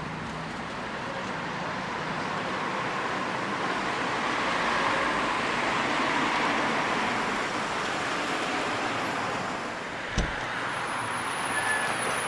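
City street traffic noise: a steady hiss of passing cars that swells and fades a few seconds in. A single thump comes about ten seconds in.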